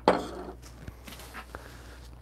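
A glass cone coffee dripper clinking and clattering as it is picked up and moved on a wooden desk: one sharp clatter at the start that dies away within half a second, then a few light taps.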